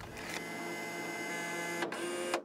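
A steady whirring hum made of many fixed tones, with a single sharp click near the end.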